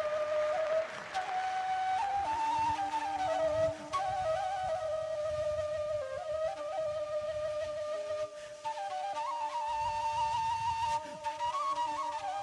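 Live Balkan folk dance music: a flute plays a lively ornamented melody that steps up and down, over low drumming.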